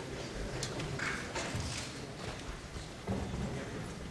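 Crowded hearing-room bustle: scattered footsteps, knocks and paper handling over a low murmur of voices as people stand and move about.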